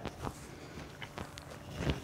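Faint handling noises, a few soft taps and rustles, as a looped resistance band is drawn around a person's waist while they shift on their knees.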